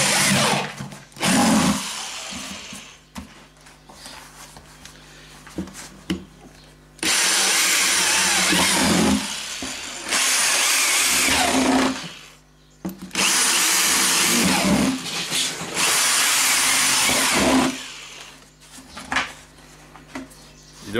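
Power drill with a 3/8-inch bit boring drainage holes through the bottom of a garbage can. It runs in several bursts of about two seconds each, one at the start and four in the second half, with quieter pauses between holes.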